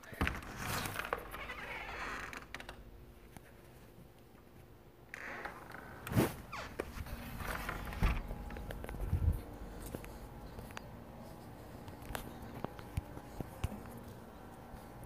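Rustling and scraping of clothing or handling noise, with a sharp click about six seconds in and a couple of dull thumps near eight and nine seconds.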